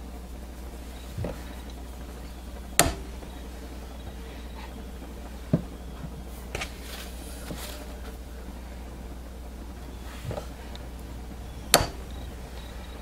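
A few light knocks and taps as a soap loaf is turned and set down on a clear acrylic soap cutter, the two sharpest about three seconds in and near the end, over a steady low hum.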